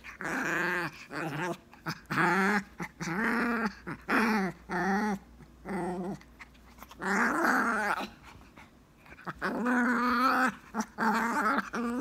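Chinese Crested dog growling in play: a run of short, pitched, wavering growls with brief breaks between them, a quieter pause about eight seconds in, then longer growls near the end.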